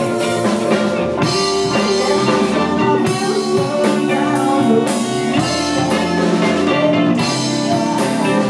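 Live band playing an instrumental passage: electric bass and drum kit keep a steady groove under sustained saxophone lines.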